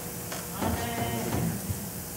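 A soft, wavering human voice heard briefly in the middle, over a steady room hum.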